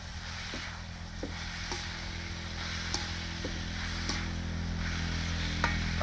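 Crispy pork and chilies sizzling in a wok as they are stir-fried, a metal spatula scraping and clicking against the pan every half second to a second, over a steady low hum.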